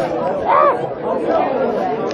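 Indistinct chatter of several people talking over one another in a busy room.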